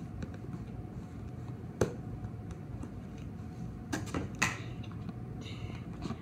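Handling noise as a box of CDs is opened: a few sharp clicks and knocks, the clearest about two seconds in and two more around four seconds, over a steady low room hum.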